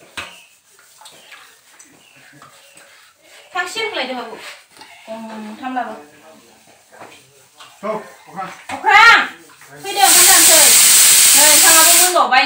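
People talking, then a loud, steady hiss that starts abruptly about ten seconds in and stops about two seconds later.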